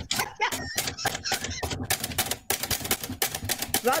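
A Silver Reed 500 manual typewriter being typed on in a quick run of key strikes. Its carriage bell dings, but not as clearly as it should. The machine has been jamming, with keys not quite reaching the paper.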